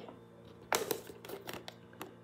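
Clear plastic toy packaging being handled: a short cluster of crinkles and clicks near the middle.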